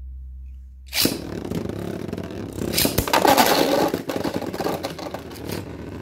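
Beyblade Burst spinning tops launched into a plastic stadium about a second in, then whirring and clattering as they collide with each other and the bowl walls. There are sharp cracks of impact, loudest around the middle.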